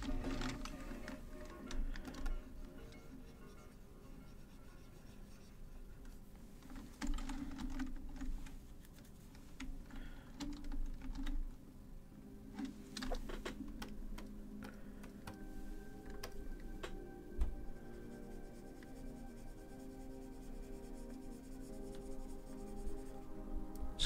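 Computer keyboard keys clicking now and then, as shortcut keys are pressed, over quiet background music.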